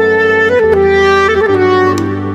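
Sad, slow clarinet melody. Each note is held for half a second to a second, and the line steps downward over sustained low accompaniment notes.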